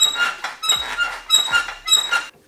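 A Honda CR250 dirt bike's front forks being pushed down again and again, squeaking about four times at an even pace. The forks are being pumped so they settle into alignment on the axle.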